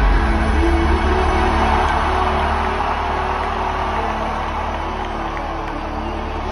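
Electronic music played live at concert volume, with a sustained deep bass and held tones. Over it a crowd cheers and whoops, loudest in the first couple of seconds and then fading.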